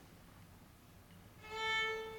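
Violin playing one sustained bowed note, near the A above middle C, entering about one and a half seconds in after a quiet stretch.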